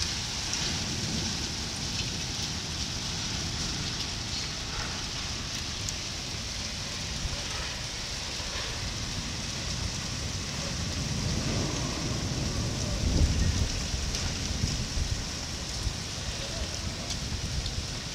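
Heavy rain pouring down in a continuous hiss. About two-thirds of the way through, a low rumble swells briefly and fades.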